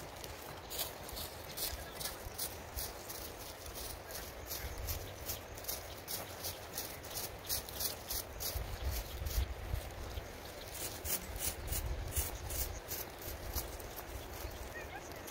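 Hand tools cutting and scraping through grass and weeds in quick repeated strokes, about two or three short, sharp swishes a second, over a low rumble on the microphone.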